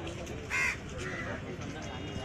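A crow cawing twice, a loud short caw about half a second in and a fainter one just after, over the murmur of people talking.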